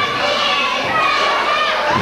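Children in the crowd yelling and shouting with high-pitched voices.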